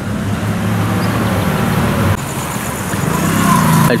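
Road traffic going by: a steady wash of car noise that shifts in character about halfway through.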